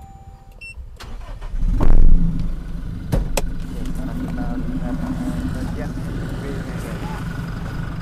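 Toyota Hilux 2GD 2.4-litre four-cylinder turbodiesel starting: a short crank and a loud flare about two seconds in, then settling into a steady idle. Two sharp clicks come about a second after it catches.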